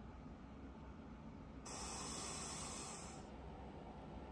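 A soft hiss lasting about a second and a half, over faint room noise.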